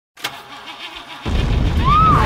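Car engine being started: a click, the starter cranking for about a second, then the engine catches and runs loudly. A rising tone comes in near the end.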